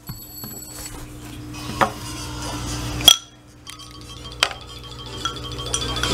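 A few sharp clinks of a spoon against a porridge bowl during spoon-feeding, the loudest about three seconds in, over faint steady electronic tones.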